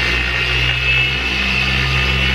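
Porter-Cable dual-action polisher running steadily at about speed five with a foam pad pressed on car paint, cutting compound to remove swirls and water spots. The motor gives a steady low hum with a high whine over it.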